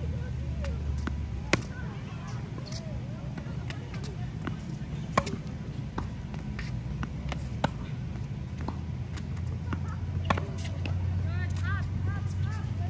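Tennis rally on a hard court: four sharp racket-on-ball strikes a few seconds apart, with softer ball bounces and shoe taps between them, over a steady low rumble.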